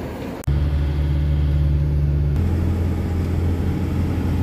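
A truck's diesel engine running steadily under way, heard from inside the cab as a loud, low drone. It starts abruptly about half a second in, and its tone shifts suddenly just past halfway.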